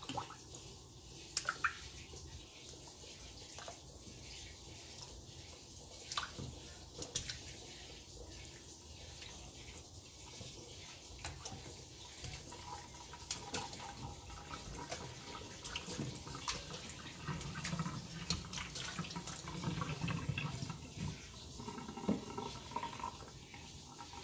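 Faint water splashing and dripping as raw milkfish steaks are lowered by hand into a pot of salt water to soak, with scattered small clicks and knocks.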